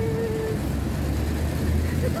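A low, steady rumble of a vehicle engine nearby, growing a little louder in the second half, after a brief "oh" from a woman at the start.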